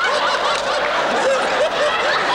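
A large audience laughing together, many voices overlapping in a continuous mix of chuckles and snickers.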